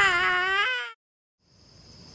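A cartoon character's acted wail of pain, one wavering cry that cuts off about a second in. After a moment of silence, faint steady outdoor ambience fades in near the end.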